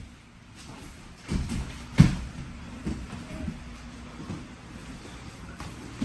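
Dull thumps and shuffling of grappling bodies on foam gym mats, with a sharper thump about two seconds in and a few softer ones after.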